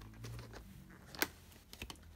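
Hard plastic clicks from a VHS cassette and its case being handled: one sharp click about a second in, then a few quick clicks near the end.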